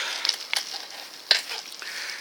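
Rolling bicycle ride heard on a handheld phone mic: a steady crackly hiss broken by a few sharp clicks.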